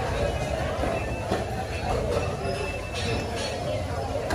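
Busy market ambience: vendors and shoppers talking in the background over a steady low rumble, with a few brief knocks and clatters.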